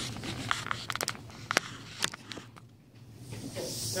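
A few light knocks and clicks of objects being handled on a hard bench, then a short lull.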